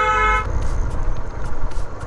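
A vehicle horn sounding one long steady blast that stops about half a second in, followed by a low rumble of wind and road noise from a motorcycle riding along.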